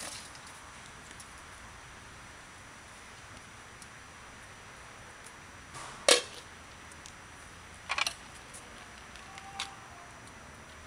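A few short clinks and knocks from the cooking pan and its glass lid being handled as the solar oven is opened. The loudest comes about six seconds in with a brief ringing tail, and two lighter ones follow, over a steady faint background hiss.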